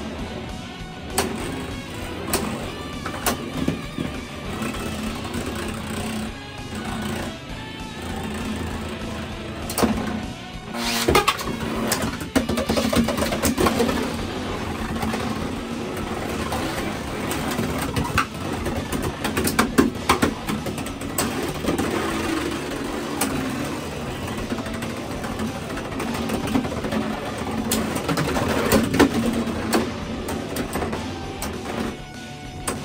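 Beyblade X spinning tops whirring on a plastic stadium floor and clacking against each other, with repeated sharp collision clicks that bunch up about a third of the way in and again near the end, under background music.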